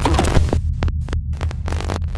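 Glitch-effect logo sting: a deep, steady hum with rapid digital static crackle running through it, and a few sharp glitch clicks around the middle.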